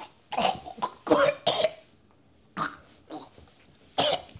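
A man coughing and gagging through a mouthful of blood: a run of coughs in the first two seconds, then two shorter ones near the end.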